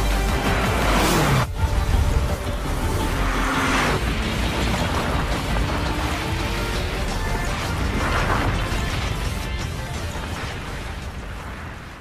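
Cinematic trailer music layered with impact and boom sound effects and car engines. There is a sharp hit about a second and a half in, and the music fades out near the end.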